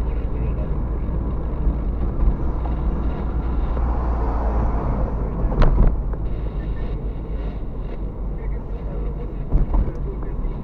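Road and engine noise inside a moving car's cabin: a steady low rumble, with a sharp knock a little past halfway and a smaller one near the end.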